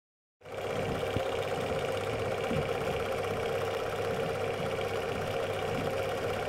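Prinz Magnon film projector running, its motor and film-transport mechanism giving a steady, fast clatter over a hum. It starts a moment in.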